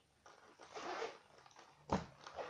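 A pencil case's zipper being tugged open, rasping in a short pull, with a sharp click near the end.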